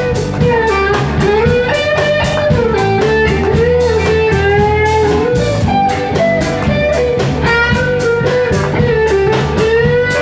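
A live band plays a blues-rock number on guitars and drums, with a lead melody line that bends and wavers in pitch over a steady beat.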